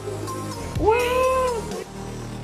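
Background music, with a child's high, drawn-out whine rising and falling about a second in, as she is coaxed onto a glass floor.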